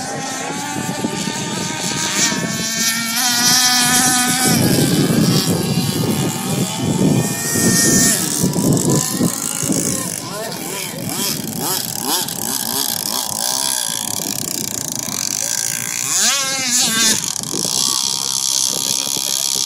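Nitro RC boat engines, small glow-fuel two-strokes, running at high revs with a whine whose pitch rises and falls as the boats pass, with a sharp wavering sweep near the end.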